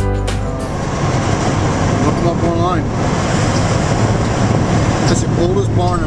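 Steady road and engine rumble heard inside a moving car.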